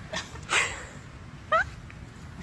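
A cat meowing twice in short calls: one about half a second in, then a quicker call rising in pitch about a second later.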